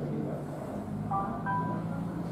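A few short electronic chime-like tones about a second in, over a steady low hum of indoor room noise.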